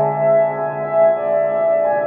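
Background music: a sustained keyboard chord with a slow melody moving above it.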